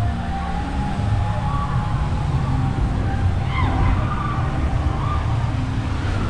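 Open-air theme park background: a steady low rumble with faint piped music and a drawn-out, slightly wavering tone above it.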